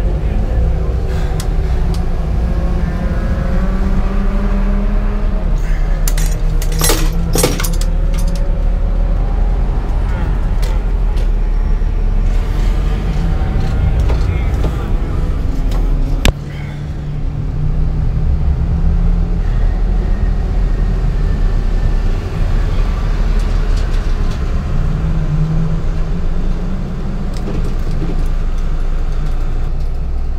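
Volkswagen Mk5 GTI's 2.0-litre turbocharged four-cylinder engine running at low revs as the car creeps along, heard from inside the cabin. A cluster of rattles and clinks comes about seven seconds in, and a sharp click about sixteen seconds in.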